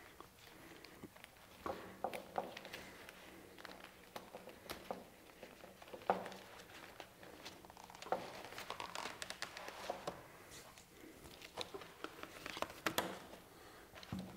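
Faint rustling of a diffuser being stretched over the edges of an LED panel frame, with scattered light clicks and taps.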